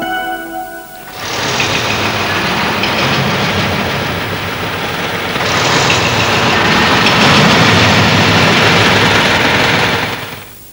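A Tata Sumo SUV's engine running as the vehicle drives in and pulls up close. It grows louder about halfway through as the vehicle nears.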